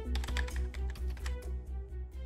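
Background music with a steady pulsing beat, overlaid with a run of computer-keyboard typing clicks.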